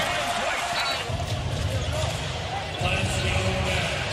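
Basketball game sound: a basketball bouncing on the hardwood court, with faint voices in the arena. The bouncing comes in about a second in and runs as a dense run of low knocks.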